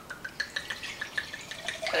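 Red wine being poured from a bottle into a glass: a quick run of small glugs and drips.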